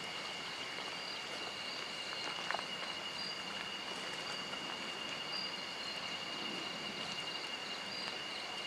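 Night insects: a continuous high-pitched drone with a fainter, higher pulsing chirp above it, over a steady hiss of outdoor background noise, and one faint click about two and a half seconds in.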